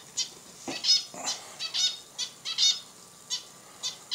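Pet bird in its cage chirping: about ten short, sharp, high calls in quick, irregular succession.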